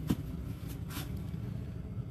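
Steady low hum of a running gas furnace and its blower, with a few brief soft rustles in the first second.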